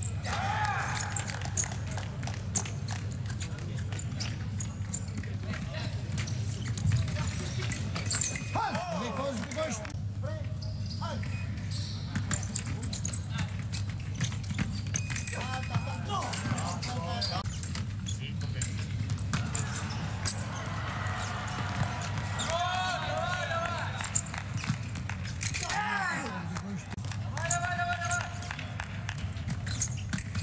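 Foil fencing bout in a large hall: frequent sharp clicks of blades and footwork on the piste, with fencers' shouts and yells several times. A short steady electronic scoring-machine tone sounds about 8 seconds in and again around 16 seconds, when a touch is registered.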